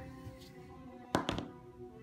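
A die thrown onto a gaming mat, landing with two quick knocks a little over a second in, over faint background music. It is the roll for a Fury save.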